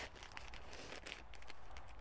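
Faint rustling and crinkling of a paper seed packet being handled, over a quiet steady hiss.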